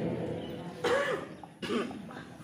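A person coughs twice, a little under a second in and again near the end, while the echo of the preceding chant dies away.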